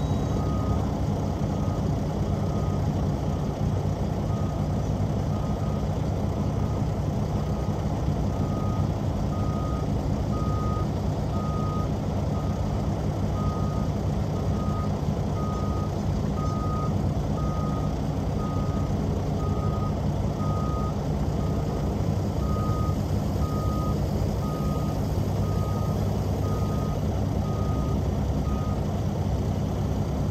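A telehandler's reverse alarm beeping steadily, about once every three-quarters of a second, and stopping near the end, over the steady low running of heavy diesel engines.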